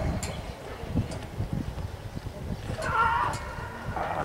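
A few faint knocks, then about three seconds in a short, drawn-out shout from a person's voice.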